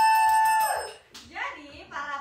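A woman's long, high-pitched excited "wow", held on one pitch and falling away just under a second in, followed by a little quiet speech.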